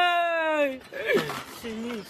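A person's long, held cry while swinging, falling in pitch as it ends less than a second in, followed by a short falling cry and a lower call near the end.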